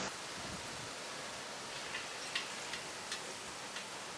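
Steady hiss of outdoor town-square ambience, with a handful of light, sharp clicks in the second half.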